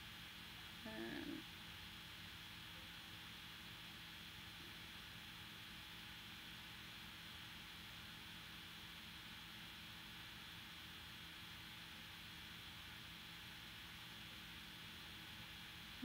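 Near silence: room tone with a faint steady hum and hiss, and one short murmur of a voice about a second in.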